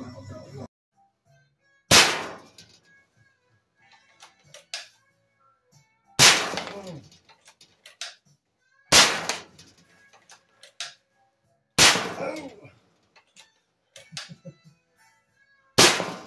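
Walther Reign PCP bullpup air rifle fired five times, about three to four seconds apart, each a sharp crack with a short ringing tail. Between shots there are light clicks of the action being cycled.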